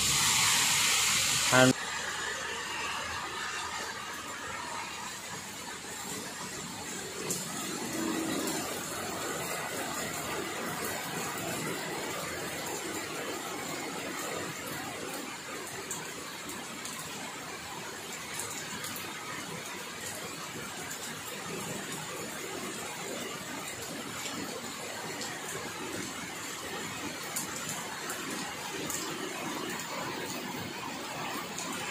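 Steady heavy rain falling on a tiled veranda, trees and a wet road: an even hiss that continues throughout. About two seconds in, a louder stretch cuts off sharply and the rain sound settles at a lower level.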